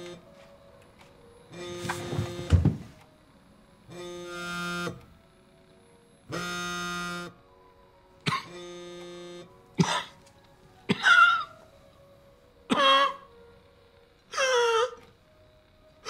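Mobile phone on vibrate buzzing against a table in four steady bursts of about a second each, the alert of an incoming text message. In the second half come several short, sudden sounds whose pitch slides.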